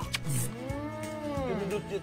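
A single drawn-out, voice-like call that rises and then falls in pitch over about a second, over background music.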